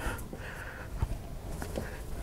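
Quiet hand-handling noise as a kitchen sink strainer basket is pressed down into its bed of plumber's putty, with a soft click about a second in.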